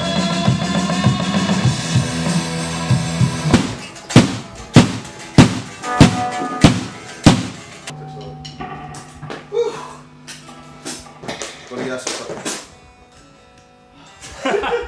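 Rock band playing live in a studio: electric guitars and bass hold chords over drums, then the band hits about seven loud accented drum-and-cymbal strokes roughly every 0.6 s to end the song. A low note rings on with a few scattered drum taps and dies away near the end.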